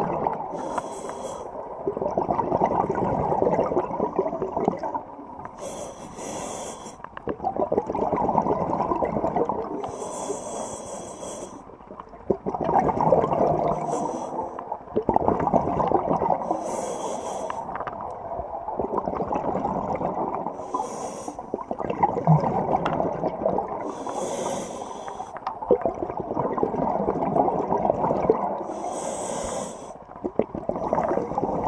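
Scuba diver breathing through a regulator underwater: a short hiss on each inhale, then a few seconds of bubbling exhaust, repeating about every four to five seconds, seven breaths in all.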